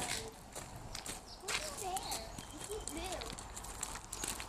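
Footsteps crunching on a gravel road, irregular steps of people walking, with voices over them.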